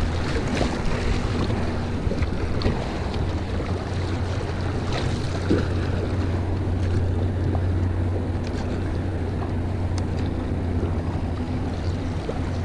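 River water rushing through a riffle around a small kayak, with occasional splashes against the hull, and a steady low rumble of wind on the microphone.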